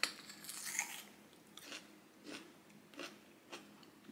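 A bite into a firm, crunchy nectarine, then chewing the mouthful with a few short, fainter crunches.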